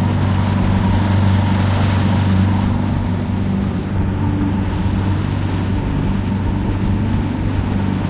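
A rigid inflatable boat's outboard motor runs steadily at cruising speed, a constant low hum under a steady rush of water and wind noise.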